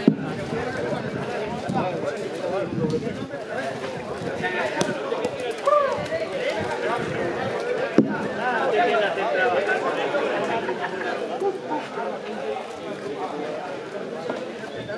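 Several people talking at once in the background, no single clear voice. Two sharp knocks cut through, one at the very start and one about eight seconds in.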